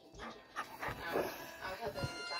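A dog making a few short, soft whines and breathy noises while it begs for a cracker.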